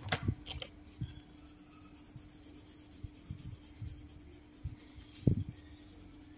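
Colored pencil strokes on paper as a coloring page is shaded, quiet, with a few light taps and knocks; the loudest knock comes about five seconds in.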